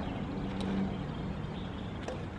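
A steady low engine hum, like a motor vehicle running, over outdoor background noise.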